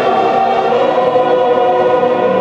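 A stadium crowd of thousands of midshipmen singing together in long held notes, the massed voices echoing across the stands.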